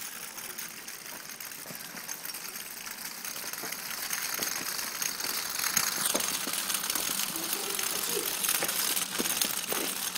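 Small electric motor and gearing of a Meccano model vehicle running as it rolls across a gritty concrete floor, with many small clicks; the noise grows steadily louder.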